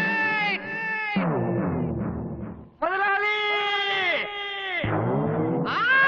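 A man's long, drawn-out shouted calls, each held and bending in pitch, in two groups with a short gap between them.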